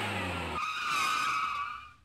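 Vehicle sound effect: a low engine rumble cuts off about half a second in, replaced by a high-pitched skidding squeal that fades out near the end.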